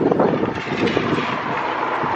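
Gusty wind rumbling on the microphone, settling into a steady rushing noise about halfway through.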